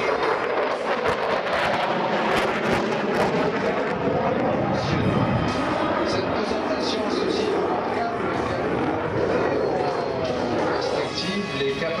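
Jet noise from a Dassault Rafale's two Snecma M88 turbofans as it manoeuvres in a flying display: a loud, dense, steady rush with pitch that shifts and glides. Public-address music and voice are mixed in.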